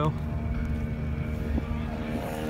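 A car engine running steadily nearby, its pitch holding constant.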